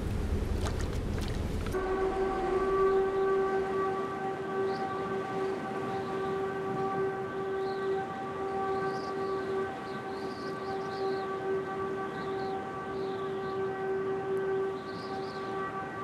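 Surf and wind noise for about the first two seconds, then a single steady, unwavering pitched drone that comes in suddenly and holds to the end.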